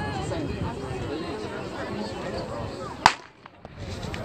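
Spectators chattering, then a single sharp starter's pistol shot about three seconds in, starting a 100 m sprint; the sound drops away briefly just after the shot.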